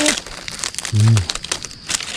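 Dry fallen leaves crackling and rustling as hands work a mushroom loose from the leaf litter. A short low voice sound comes about a second in.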